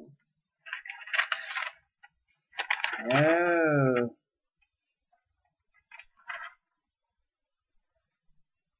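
A man's voice holding one long, wavering, wordless vocal sound for about a second and a half, a few seconds in. It is preceded by about a second of scratchy rustling, and two brief faint scratchy sounds come near the end.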